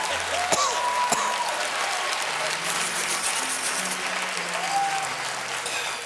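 Studio audience applauding, with a few cheers rising above the clapping.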